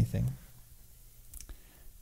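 A man's speech trails off at the start, followed by quiet room tone with a couple of faint, short clicks about one and a half seconds in.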